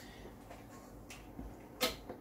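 A few light, sharp clicks and knocks from a tilt-head KitchenAid stand mixer as its head is unlocked and lifted. The sounds are short and spaced out, with low background between them.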